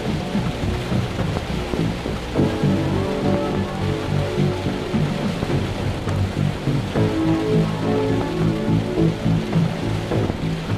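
Slow music of long held notes over steady heavy rain, the chord changing about two and a half seconds in and again about seven seconds in.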